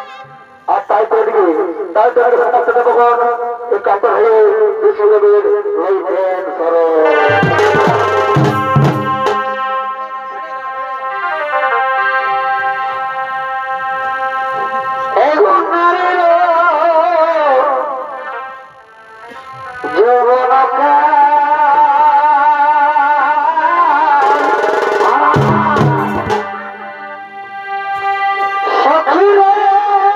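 Chhau dance music: a shehnai-type reed pipe plays a wavering, ornamented melody over steady held tones. Short bursts of drumming come in about eight seconds in and again around twenty-five seconds.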